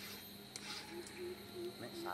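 Quiet outdoor background with a faint, distant voice briefly in the middle.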